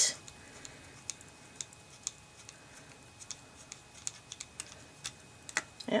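Small, irregular metallic clicks as fingers unscrew the takedown wheel of a Beretta U22 Neos .22 pistol, with a sharper click near the end as the slide releases from the frame.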